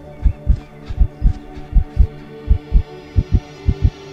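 Heartbeat sound effect in the soundtrack: deep double thumps, about one pair every three-quarters of a second, over a steady low hum of sustained tones.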